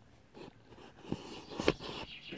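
Scattered clicks and scrapes of a handheld camera being handled and repositioned, with a sharper click a little before the end.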